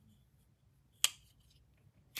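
A single sharp click about a second in, as the blade of the High Grain Designs Deville folding knife is flicked on its front flipper and snaps into place against a firm detent.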